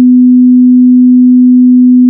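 A loud, steady, low-pitched sine-wave test tone on one unbroken pitch: the reference tone that goes with colour bars at the end of a tape.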